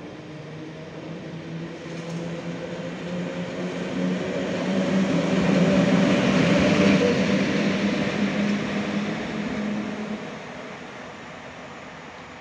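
A PKP Intercity electric locomotive passing close by, with a steady hum and rolling wheel noise that build up, peak about halfway through, and fade after about ten seconds as it moves away.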